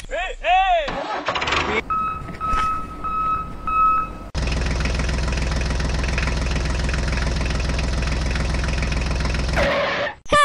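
A squeaky cartoon voice sound effect, then four short evenly spaced beeps. Then an engine sound effect, dubbed onto the toy tractor, starts suddenly and runs steadily for about five seconds.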